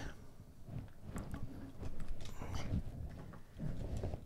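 Small plastic LEGO parts being handled, with faint clicks and rustling as a wheel is fitted onto the rear axle.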